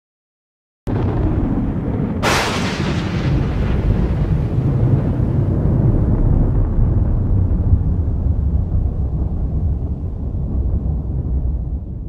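Thunder sound effect: a low rumble starts suddenly about a second in, a sharp crack comes about two seconds in, then a long, deep rumbling slowly thins out.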